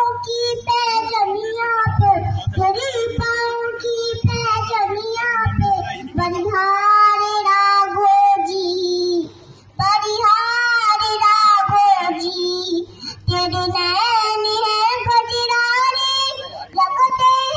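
A young girl singing a Hindi song solo into a microphone, with a short pause about nine seconds in.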